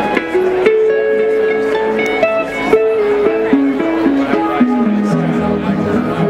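Funk jam band playing live. A lead electric guitar holds one long note, then steps downward through a run of shorter notes over the full band.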